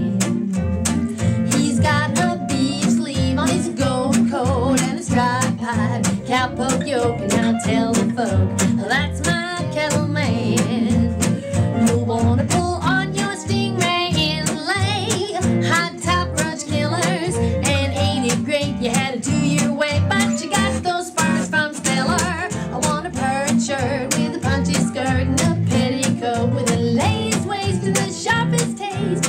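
Acoustic guitar strummed steadily while a woman sings a western-style tune.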